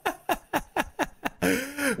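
A man laughing: a quick run of short 'ha' bursts, about five a second and each falling in pitch, then a longer drawn-out note near the end.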